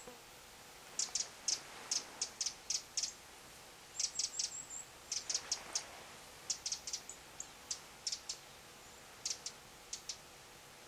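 A small bird calling from the hillside: runs of short, sharp clicking notes, several a second, with a brief series of thin high chirps about four seconds in.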